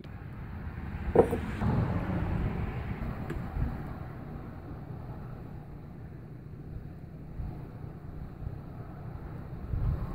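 Steady low rumble of wind on the microphone outdoors, with a single sharp knock about a second in.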